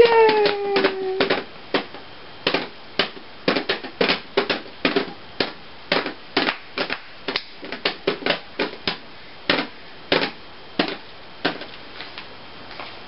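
A baby patting the top of a plastic toy drum with an open hand: an irregular run of light taps, about two or three a second. A short falling tone sounds at the start.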